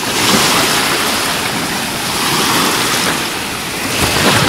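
Waves of a choppy sea breaking and washing through the shallows: a steady rush of surf that swells up at the start.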